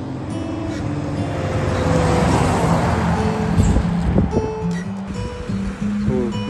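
A truck driving past on the road, its engine and tyre noise swelling to a peak two or three seconds in and then fading, under background acoustic guitar music.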